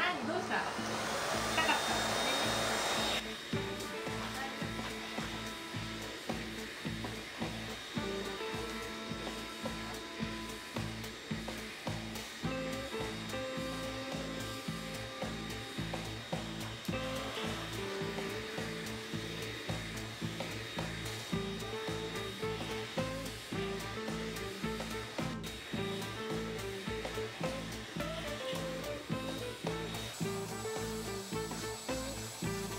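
Pet grooming vacuum's motor running with a steady whine while its brush head is worked over a corgi's coat. The motor noise is loudest in the first three seconds, then sits under background music with a steady beat.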